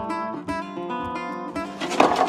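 Background music: an acoustic guitar playing plucked and strummed notes.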